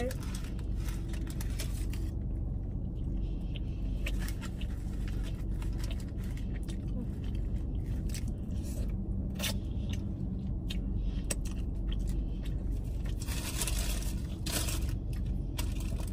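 Someone eating a taco and handling food in a car: scattered small crunches, clicks and scrapes over a steady low rumble, with a longer stretch of rustling about thirteen seconds in.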